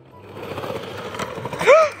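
Wheels of a ride-on toy rolling down a skatepark ramp and across the ground, a steady grainy rolling noise. A short shout comes near the end.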